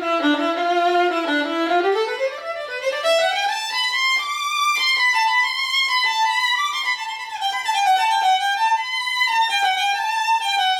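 Antique German violin labelled Georg Klotz, freshly set up with a new bridge and new strings, played solo with the bow. A single melody line starts low, climbs steadily for about two seconds into a higher register, then moves up and down by small steps there.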